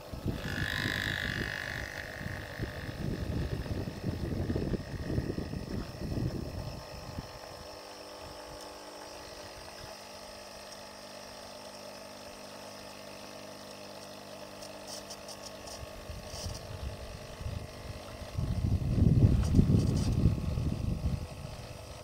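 Tassimo pod machine brewing: its pump runs with a steady hum as hot water streams into a paper cup. Rougher, louder stretches come in the first few seconds and again about three seconds before the end.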